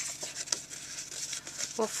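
Stiff cardstock rustling and sliding as hands handle and fold die-cut paper pieces, with a few light clicks.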